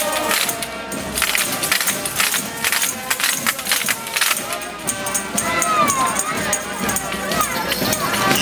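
Traditional New Year's folk song: a procession group singing over rapidly shaken and struck tambourines and clacking wooden percussion, with voices all around.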